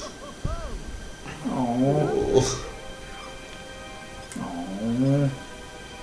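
A cartoon character's voice making two drawn-out, wavering groans, about a second each, over soft background music with held notes.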